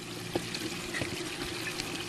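Steady running and trickling of water circulating through an aquaponics system's grow beds, with two faint light knocks about a third of a second and a second in.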